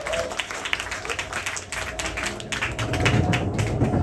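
Small audience applauding after a band's song ends, many separate hand claps, with a faint steady tone underneath.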